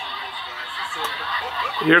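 A man chuckling softly under his breath over a steady background hiss, then starting to speak near the end.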